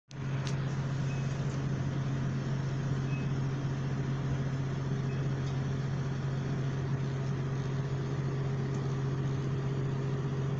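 Class 175 diesel multiple unit's underfloor diesel engine heard from inside the passenger saloon: a steady low drone with one strong hum, unchanging, as the train sits or creeps slowly at the platform.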